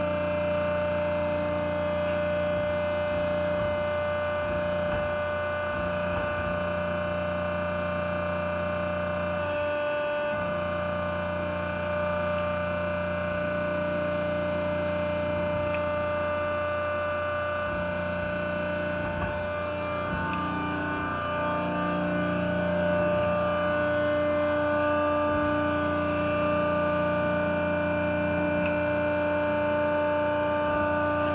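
Press brake running: a steady motor hum with several held tones, the lower ones stepping up and down a few times as the ram is worked with the two-hand run buttons.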